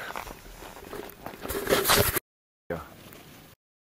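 Footsteps and the rustle of a hiker's gear on sandy ground, with a louder rush of noise about a second and a half in. The sound cuts off suddenly, returns briefly, and cuts off again.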